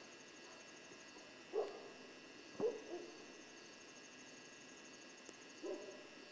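A few short, distant calls: two about a second apart early on, a weaker one right after the second, and another near the end. They are heard over a steady, faint, high-pitched drone.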